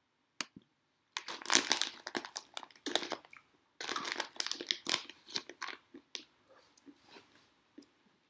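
Crinkling and crunching close to the microphone, in dense irregular bursts that thin out over the last couple of seconds, after a single click near the start.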